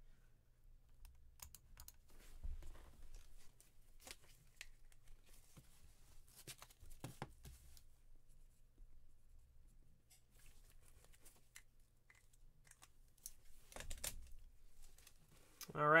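Scattered light clicks and rustles from trading cards and their plastic packaging being handled, over a faint steady low hum.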